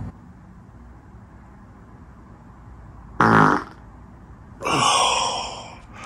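A short human fart with a falling pitch about three seconds in, then a longer, louder airy rush of sound that fades over about a second. Both sit over the steady hum of the room's air conditioning.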